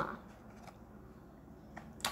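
Quiet room with a couple of faint plastic clicks from a wax bar's clear plastic clamshell being handled, a sharper click near the end as it starts to open.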